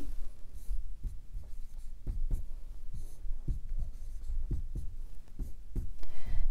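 Dry-erase marker writing on a whiteboard: a series of short, irregular strokes and taps as terms are written out and crossed through.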